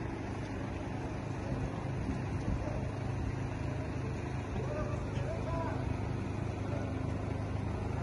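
Steady low engine rumble, with faint voices calling out about halfway through.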